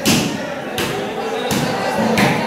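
A series of heavy thumps, one about every three-quarters of a second, echoing off concrete, with men's voices between them.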